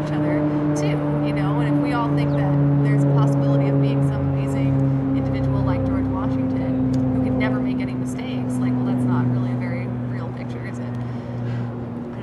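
A motor vehicle's engine running nearby, a steady low hum that slowly drops in pitch, with indistinct voices in the background.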